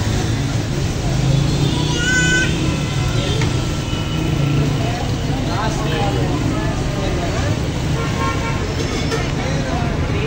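Busy street-side shop ambience: a steady low rumble with people talking in the background, and a brief high toot about two seconds in.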